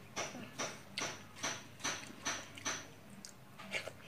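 A child chewing a mouthful of rice with wet mouth smacks, in an even rhythm of about two and a half a second, then a few uneven smacks near the end.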